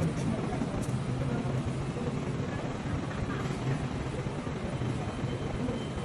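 Steady background noise of vehicles in a covered car pickup area, with indistinct voices mixed in.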